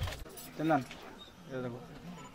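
Short bits of quiet talk between people, twice, with a brief high clink about half a second in.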